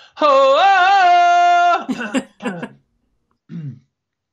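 A man's voice holding one loud vocal sound for about a second and a half, its pitch wavering, then two short throat-clearing coughs and a brief grunt near the end. These are the exaggerated throat-clearing noises of a singer fussing over his voice.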